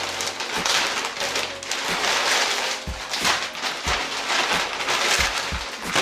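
Shopping bag and plastic-wrapped clothes rustling and crinkling as they are rummaged through and pulled out, with a few soft thuds from handling.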